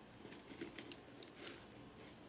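Faint clicks and light rustling of snack grabber tongs picking cheese balls out of a plastic jar, with a few short clicks around the middle.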